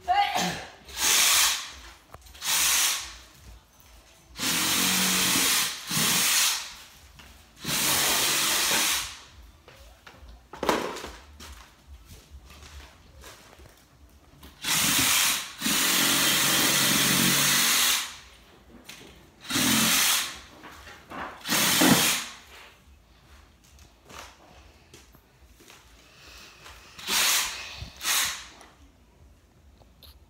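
Yellow DeWalt cordless drill running in short bursts of one to three seconds, about ten times, with quieter pauses between, as it works the bolts of a Christmas tree stand.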